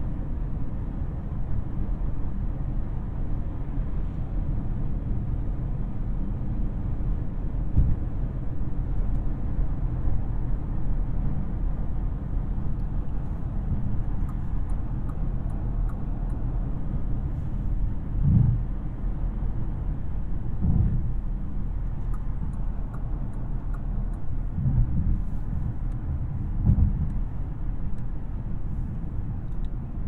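Cabin noise inside a 2023 Bentley Flying Spur Speed cruising on a freeway: a steady low rumble of tyres and its twin-turbocharged W12, well muted by the insulation. A few brief low thumps stand out, the loudest about 18 and 21 seconds in.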